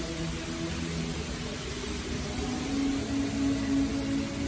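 Steady outdoor city ambience: a low traffic-like rumble under a constant hiss. A few faint held tones come through, one longer and clearer in the second half.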